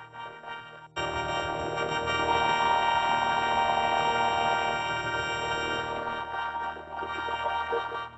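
Logo jingle audio run through the 4ormulator V1 effect: a dense chord of many steady tones. It jumps sharply louder about a second in and cuts off at the end.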